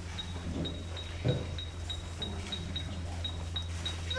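A steady low hum, with a faint, short, high-pitched pip repeating about three times a second and a single thump about a second in.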